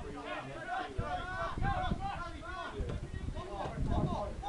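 Several voices talking and calling out, too indistinct to make out as words, with a low rumble and a few thumps underneath.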